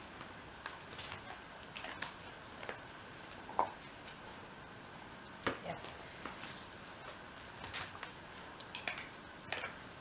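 Scattered light clicks and taps of a dog moving about and nosing around a hard plastic toy, the sharpest about three and a half and five and a half seconds in, over a faint steady high tone.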